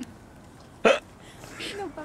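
A woman's single short, sharp burst of laughter about a second in, like a hiccup, followed by a soft murmured voice.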